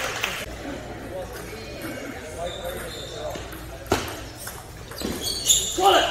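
Indistinct voices talking in a large hall, with one sharp tap of a table tennis ball bouncing about four seconds in.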